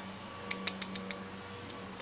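A small plastic glitter jar being picked up and handled: a quick run of light clicks about half a second in, over a faint steady hum.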